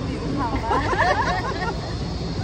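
Voices talking for about a second, starting about half a second in, over a steady low rumble of city street noise.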